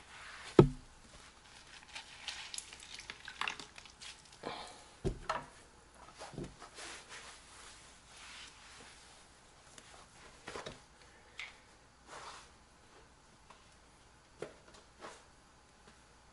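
Microfiber rag wiping water off a tile floor: soft, scattered rubs and swishes, with a sharp knock about half a second in and a dull thud about five seconds in.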